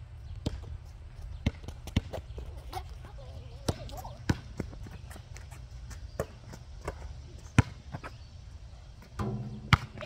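Basketball bouncing on an asphalt court as it is dribbled: about ten sharp bounces at irregular intervals, the loudest about three quarters of the way in, over a steady low rumble.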